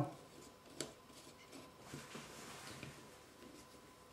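Faint handling sounds of a lampshade being screwed onto a lamp fitting: a light click about a second in, then soft rubbing and scraping.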